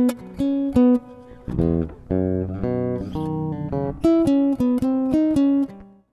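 Electric bass played melodically, plucking chords and single notes high on the neck; each note starts sharply and rings. The playing fades out at the very end.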